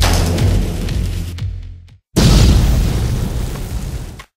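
Two cinematic boom sound effects in an edited music track: one loud hit at the start and a second about two seconds in, each dying away over roughly two seconds, with a brief silence between.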